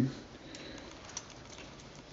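Faint small clicks from the twist knob of a Gillette Fat Boy adjustable safety razor being turned to close its butterfly doors, with one slightly sharper click about halfway through.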